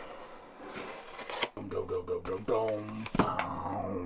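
A box cutter slitting the packing tape on a cardboard shipping box: a steady scraping hiss with a couple of clicks for about the first second and a half. After that a man's voice, drawn-out and without clear words, takes over.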